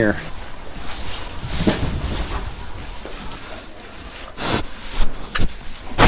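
Hay bedding rustling and crunching as pigs root through it close to the microphone, with a few short sharper knocks; the loudest burst of rustling comes about four and a half seconds in.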